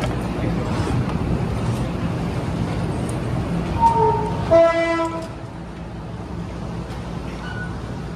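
Passenger train rumbling at the station platform, with a short high horn toot about four seconds in followed at once by a longer, lower horn blast; the rumble drops off just after the horn.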